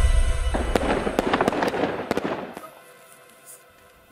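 Music stops about half a second in, followed by a rapid crackle of firecracker pops that fades out about two and a half seconds in.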